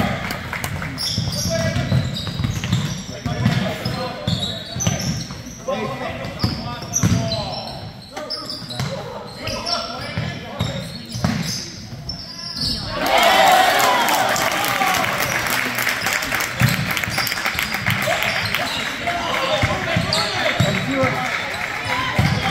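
A basketball being dribbled on a hardwood gym floor, repeated thuds, with sneakers squeaking and voices echoing in the large gym. The voices and crowd noise grow louder a little past halfway.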